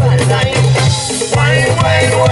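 Live band playing, led by a strong repeating electric bass line over a drum kit, with guitar and keyboard above.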